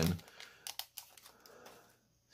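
Light clicks and ticks as cards are slid out of an opened Mosaic basketball card pack and handled, a few of them close together about a second in.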